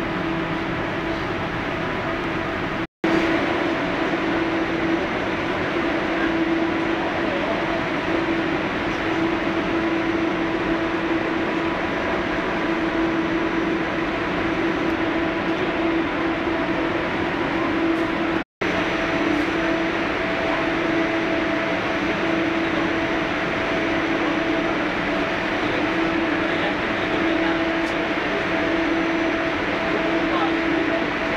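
Inside the carriage of an electric airport express train running on the line: a steady rush of running noise with a low hum that swells and fades every second or two. The sound cuts out for an instant twice.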